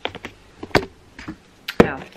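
Handling noise close to the microphone: a few sharp, separate taps and knocks as hands move things about on the desk, the loudest near the end.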